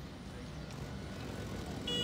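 City street ambience: a steady wash of traffic and street noise that grows slowly louder, with a short high tone coming in near the end.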